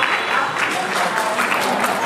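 Spectators and players clapping, a dense patter of hand claps with a few voices mixed in.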